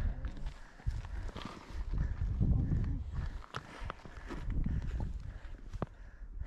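Hikers' footsteps on a rocky trail, with a few sharp clicks and a low rumble that comes and goes.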